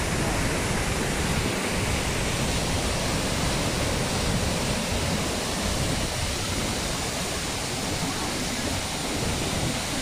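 Murchison Falls on the Nile in flood: a large waterfall's heavy, unbroken rush of water pouring through the gorge, loud and steady throughout.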